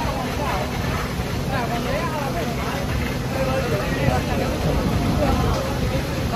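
Wooden roller coaster's lift-hill chain running steadily as a loaded train climbs, a continuous low rattle, with people talking over it.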